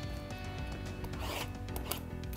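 Soft background music, with hands rubbing and scuffing against a shrink-wrapped cardboard box of trading cards: one short scuff about a second in and another near the end.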